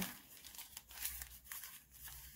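Faint rustling and crinkling of a brown paper bag being handled and pressed flat, with a few soft scattered clicks.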